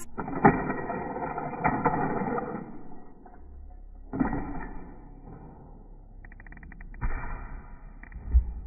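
Hot Wheels die-cast toy car run on orange plastic track: rushing, rattling rolling noise broken by several sharp knocks, with a quick run of clicks near the end.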